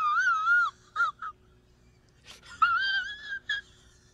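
A man crying in a high, wavering falsetto wail: two drawn-out wobbling cries with short sobs between them, about a second in and again near the end.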